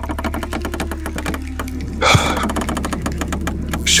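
Rapid, even mechanical-sounding clicking, over a steady low drone, with one short louder hit about halfway through.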